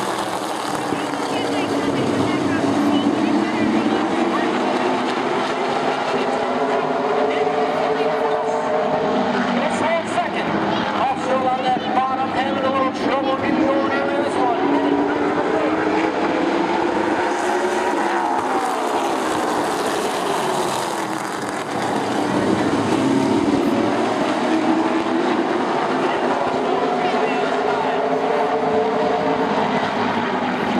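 A pack of late model stock cars racing on a short oval, their V8 engines revving hard, the many engine notes rising and falling in pitch as the field goes round. The sound briefly drops away a little past two-thirds of the way through, then builds again.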